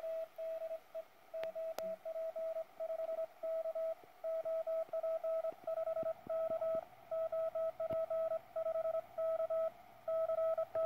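Morse code from a QRP Labs QCX Mini CW transceiver: a single tone of about 700 Hz keyed on and off in dits and dahs, spelling out a CQ call.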